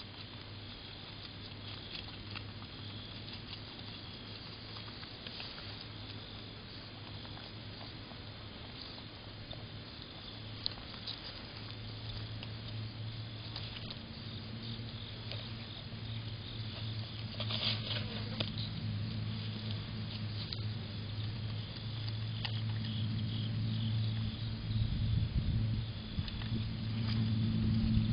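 Groundhog feeding close to the microphone: faint scattered clicks and patter of it handling and chewing cherry tomatoes, over a steady low hum. A brief rustle comes a little past halfway, and the sound grows louder and rumbling near the end as the animal moves up against the microphone.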